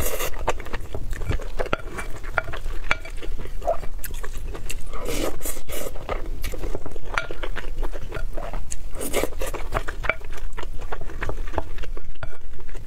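Close-miked eating: a wooden spoon scraping and stirring rice and curry in a glass bowl, with chewing and many small wet clicks between scoops.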